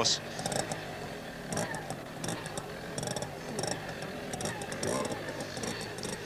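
Small trials motorcycle engine running and being blipped unevenly as it is ridden over an obstacle course, with a background of crowd murmur.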